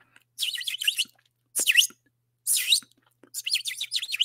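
Small bird chirping: four bursts of quick, high chirps with short silences between them.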